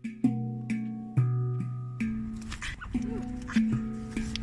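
Slow handpan music: single pitched notes struck one after another, each ringing on with a long sustain.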